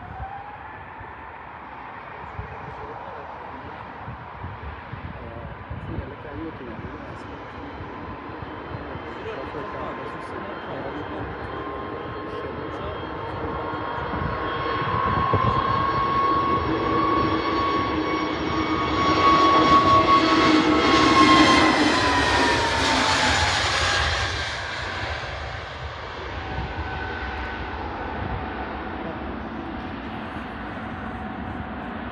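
Airbus A320-family twin-engine jet airliner on its takeoff roll: the engine whine rises in pitch as the engines spool up at the start, then grows steadily louder as the jet accelerates toward and past. It is loudest about two-thirds of the way through, where the whine drops in pitch as it passes, and then fades as it climbs away.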